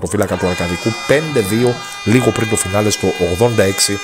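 A man talking, with a steady held musical tone or drone sounding behind the voice from just after the start.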